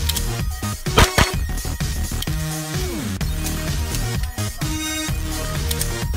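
Electronic dance music with steady synth tones and sliding pitches. Two sharp bangs about a second in stand out above it, close together.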